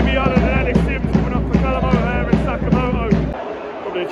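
Music with a singing voice, a regular drum beat and heavy bass; the bass cuts out about three seconds in.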